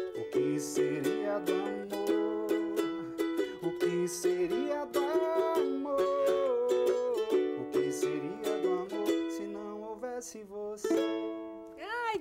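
Ukulele strummed in a steady rhythm, with a man singing a melody over it. The strumming thins out near the end as the song closes.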